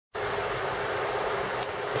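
Steady background noise: an even hiss with a faint low hum, starting abruptly a moment after the start.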